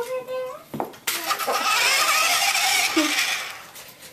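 Remote-control toy car's small electric motor and gears running as it drives off. The sound starts suddenly about a second in, holds steady, and fades near the end.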